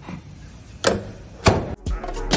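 Two sharp clacks, about two-thirds of a second apart, from a wooden door with a metal knob latching shut.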